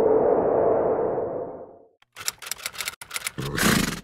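Sound effects for an animated logo intro. A hissing swell fades away by about two seconds in. After a short gap comes a run of rapid glitchy crackles and clicks, ending in a brief rushing burst near the end.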